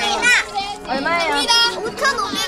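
Children's voices, high-pitched and overlapping, calling out and talking excitedly while playing a group game.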